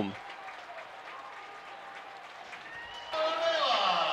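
Ballpark crowd, faint and distant at first, then from about three seconds in louder cheering and clapping mixed with voices as runners cross home plate after a home run.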